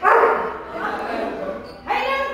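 Akita dog barking, with a loud bark right at the start and another sound rising near the end.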